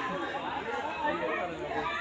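Several people talking over one another: onlookers' chatter.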